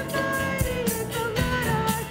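Live worship band playing an upbeat song: piano, bass guitar and drum kit, with a woman singing lead.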